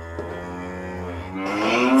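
A cow mooing, one long low moo played as a cued sound effect. A child's voice starts loudly near the end.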